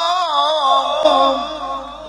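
A male qari reciting the Quran in melodic tajwid style through a microphone and PA: a long sung line whose pitch wavers quickly up and down, broken briefly about a second in, then ending and dying away in reverb near the end.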